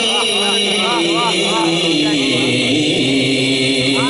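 A man reciting a naat unaccompanied through a microphone and PA system. He sings wavering, ornamented runs, then holds one long note that slides slightly down in pitch.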